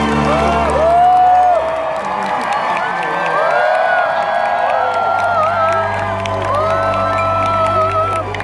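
Live band music from a stage's loudspeakers playing long held closing chords, with an outdoor concert crowd cheering and whooping over it.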